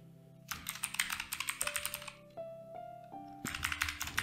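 Computer keyboard typing in two quick runs of key clicks, one about half a second in and a shorter one near the end. Soft background music with held notes plays underneath.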